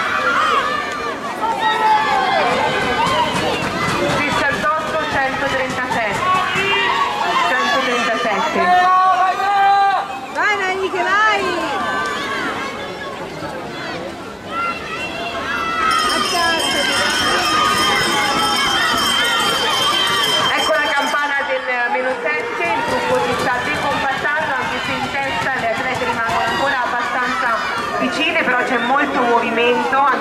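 Trackside spectators shouting and cheering skaters on, many voices overlapping. A steady high-pitched tone sounds for about five seconds in the middle.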